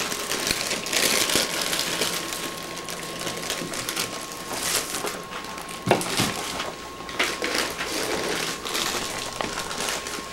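Scattered rustling and small knocks from things being handled, the sharpest about six seconds in, over a steady hiss with a thin high tone.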